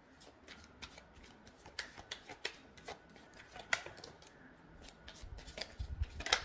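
Tarot cards being shuffled by hand: a faint run of light, irregular card flicks and taps.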